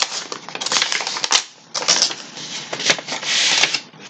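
Paper crinkling and crackling as a greeting card is taken out of its wrapping and handled: a dense run of quick crackles and taps, a brief lull, then a longer sliding rustle near the end.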